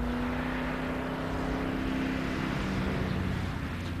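A 1957 BMW 507's V8 engine running as the car drives along a country road: a steady engine note that creeps slowly up in pitch, then fades a little near the end as the car moves away.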